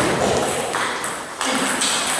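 Table tennis rally: the celluloid-type ball ticking off the bats and bouncing on the table in quick exchanges.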